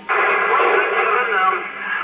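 A radio receiver's speaker opening suddenly on an incoming transmission: loud static hiss with a voice speaking in it, muffled and narrow like a radio signal.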